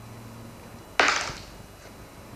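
A single sharp clatter about a second in, fading over about half a second: a felt-tip marker tossed down onto a paper sheet lying on a wooden floor.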